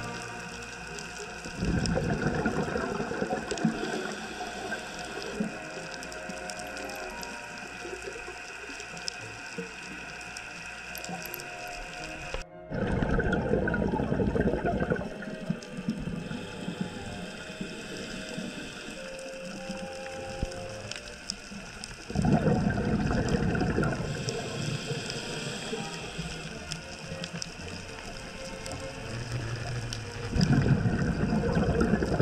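A scuba diver's regulator breathing, heard underwater: three loud bursts of exhaled bubbles about ten seconds apart. Between the bursts there is a quieter steady hum with faint tones.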